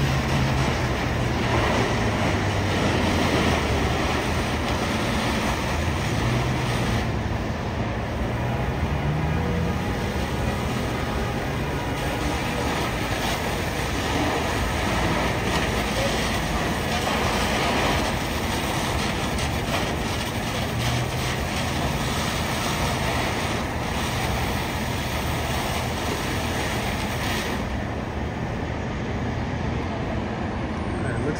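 Steady roar of fire apparatus diesel engines running at the scene, their pumps supplying hose lines, with one engine's pitch rising briefly about eight seconds in.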